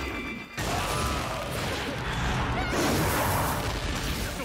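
Soundtrack of a tokusatsu action scene playing back: a dense, steady wash of battle sound effects and score, after a brief drop about half a second in.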